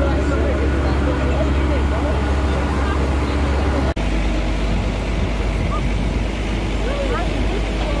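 Allis-Chalmers farm tractor's engine running with a steady low drone, with people's voices chattering over it. About halfway through there is a brief dropout, after which the drone sits slightly lower.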